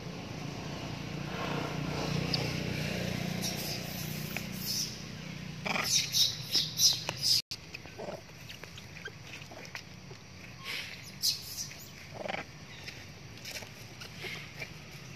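Long-tailed macaques calling: a quick run of short, sharp squeals about six seconds in, then scattered short calls, over a low rustle.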